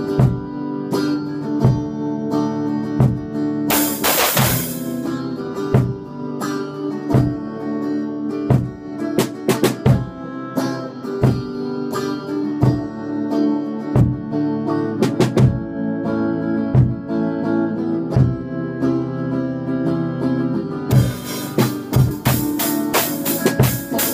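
Guitar and drum kit played together: sustained guitar chords over unevenly spaced drum hits, with a cymbal crash about four seconds in and bright cymbal or tambourine shimmer near the end.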